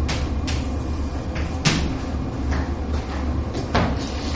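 Chalk tapping and scraping on a blackboard as words are written: a series of short, sharp strokes. A steady low room hum runs underneath.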